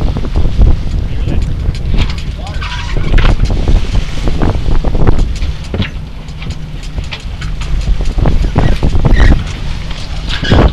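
Wind buffeting the microphone on a small sailboat under sail, a heavy gusting rumble, with brief indistinct voices.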